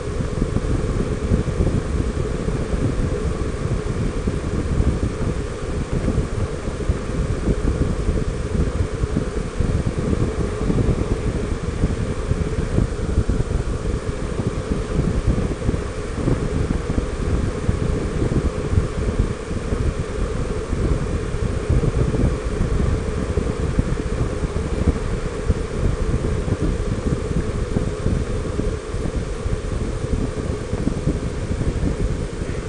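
Steady wind buffeting on the microphone over the running of a Honda Gold Wing 1800 motorcycle's flat-six engine and tyres cruising at highway speed.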